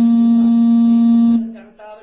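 A man's voice holding one long, loud, steady note for about a second and a half, then trailing off.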